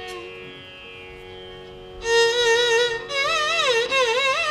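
Carnatic classical music: a steady drone holds quietly, then about two seconds in a loud melodic line enters, its notes bending and oscillating in gamaka ornaments, with a short break near the end.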